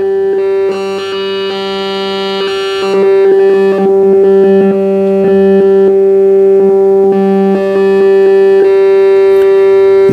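Mungo g0 Eurorack module playing a wavetable of single-cycle waveforms at one steady pitch. Its timbre shifts in steps as the wavetable position is turned by hand, with small clicks along the way.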